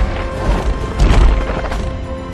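Action-film soundtrack: a dramatic score over a heavy crash of smashing, crumbling stone as a giant robot dinosaur breaks through a wall, with a deep rumble under it. The crash is loudest about a second in.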